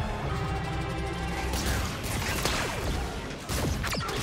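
Dramatic film score under the sound effects of a sci-fi blaster firefight: blaster shots and crashing impacts, busier in the second half.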